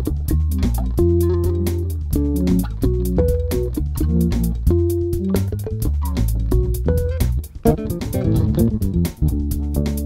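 Music Man StingRay EX electric bass played with the fingers, a bass line of changing notes, with its treble turned up, over a backing loop that keeps a steady beat. The playing drops out briefly twice near the end.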